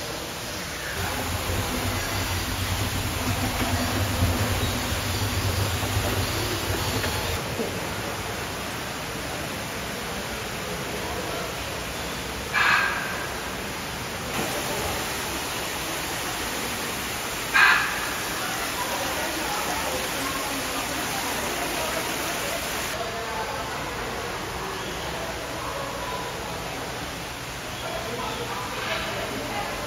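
Steady background rush of an indoor aviary, with a low hum over the first several seconds. Two brief sharp sounds come about five seconds apart near the middle.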